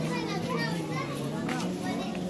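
Crowd chatter: many voices talking over one another, children's voices among them, over a steady low hum.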